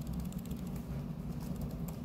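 Faint, scattered clicks of keyboard typing over a steady low room hum.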